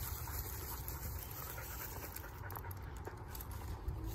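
Two leashed dogs walking close to the microphone: faint scuffs and a few light clicks over a steady low rumble.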